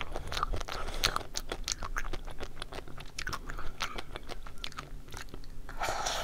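Close-miked chewing of chocolate-coated ice cream: the hard chocolate shell crunches in many small, sharp clicks, with a fuller bite near the end.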